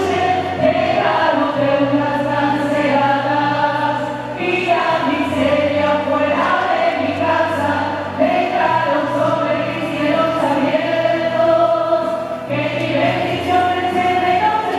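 Choir singing a slow Christian hymn in long held notes over a steady low accompaniment that changes note every few seconds.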